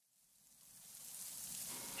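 Dead silence, then a steady hiss of background noise fading in over about a second and a half as a new outdoor recording begins.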